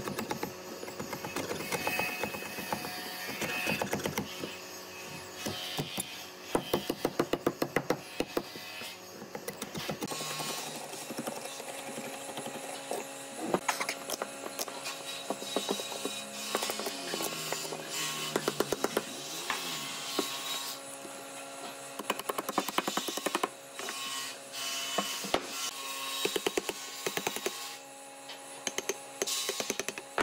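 Hand chisel driven into a wooden log by quick hammer blows, in bursts of rapid taps with short pauses between.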